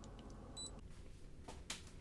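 Cricut EasyPress heat press giving one short, high beep as its timer runs out, followed near the end by a couple of light knocks as the press is handled.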